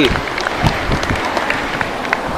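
Faint shouts of rugby players on the pitch over a steady rushing outdoor noise.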